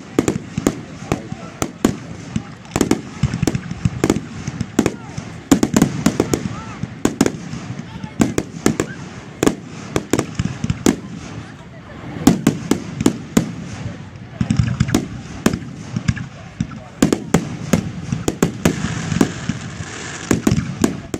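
Aerial firework shells bursting in quick succession, about two or three sharp bangs a second, many with a deep boom beneath.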